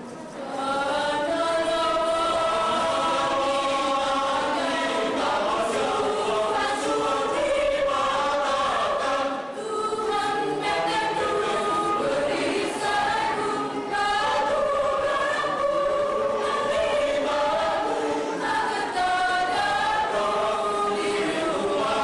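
Mixed choir of men and women singing in several parts at once, with short breaks between phrases about ten and fourteen seconds in.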